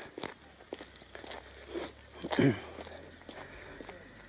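Footsteps of a person walking while filming, light knocks about every half second, with a brief bit of voice about two and a half seconds in.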